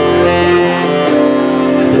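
Saxophone playing held melody notes over electric keyboard accompaniment in a live band, with a steady bass line underneath.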